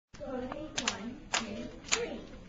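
A few scattered hand claps, four sharp claps spread unevenly, over people's voices talking.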